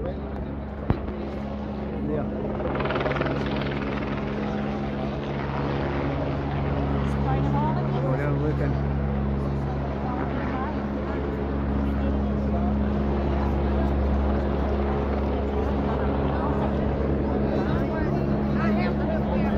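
Police helicopter flying low overhead: a steady rotor and engine drone that grows louder about two seconds in.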